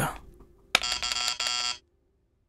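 An electric doorbell buzzing once, a steady electronic tone that starts sharply just under a second in and stops about a second later.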